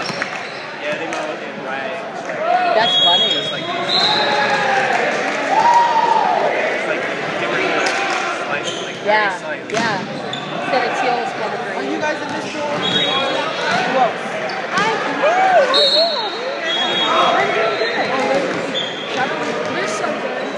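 Echoing gym ambience of a volleyball match: many people talking and calling out at once, with volleyballs repeatedly bouncing and slapping on the hardwood floor.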